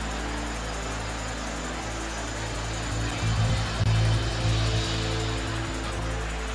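Soft worship music of sustained keyboard chords, with the haze of a congregation praying aloud beneath it; a low note swells about three seconds in.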